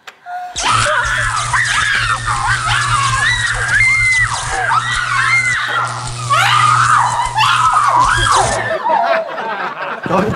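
A steady electric buzz, a comic electrocution effect from a plugged-in appliance, with a woman shrieking and wailing over it in rising and falling cries. The buzz cuts off suddenly near the end.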